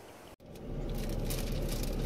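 Faint outdoor ambience that cuts off abruptly about half a second in, followed by the steady low hum and hiss inside a parked car's cabin.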